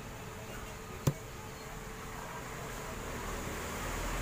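A single sharp click about a second in as the amplified speaker's power switch is turned on, over a faint steady hiss.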